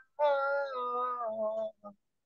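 A woman singing solo a devotional Hindi bhajan: one held, wavering line that steps down in pitch twice and breaks off shortly before the end.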